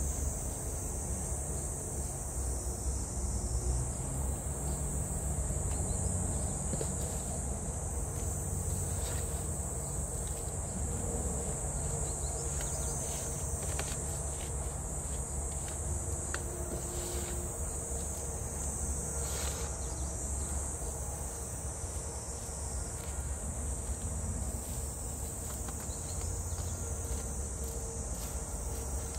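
Insects chirring in a steady high-pitched drone, over a low rumble, with a few faint knocks and scrapes from handling soil and plastic pots.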